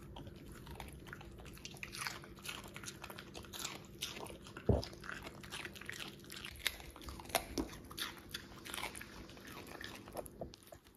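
Dogs crunching and chewing pieces of raw vegetable, a steady run of crisp bites, with one louder thump about halfway through.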